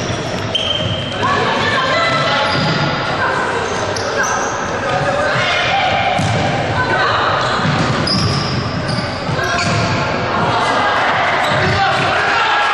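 Futsal players' shoes squeaking on a wooden sports-hall floor in many short, high squeaks, mixed with players calling out and the odd kick of the ball, all echoing in a large hall.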